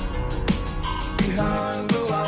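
Hardtekk electronic dance music: a hard kick drum lands about every 0.7 seconds under a synth melody. A deep sub-bass drops out about one and a half seconds in.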